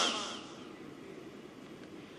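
A man's amplified voice trails off with a short echo in the first half second, leaving only faint, steady background hiss and room noise.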